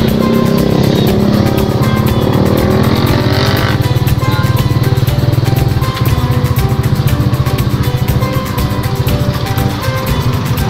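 Motorcycle engine of a sidecar tricycle running under way. Its pitch climbs over the first few seconds as it accelerates, drops away sharply about four seconds in, and then it runs on steadily.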